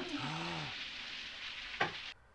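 A shower running, a steady hiss of water spray, with a brief low hum of a voice early on and a short knock near the end.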